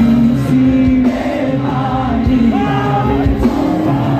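A live band playing loudly through a large outdoor PA system, with a sung melody over sustained bass and instrument notes.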